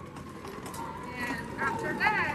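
Small wheels of a hand-pulled luggage cart rattling over brick pavers, mixed with footsteps on the paving, an irregular stream of small clicks. Faint voices come in during the second half.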